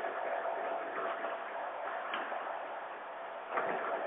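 Steady hiss of a telephone-quality line, its sound cut off above the narrow phone band, with faint indistinct sounds near the end.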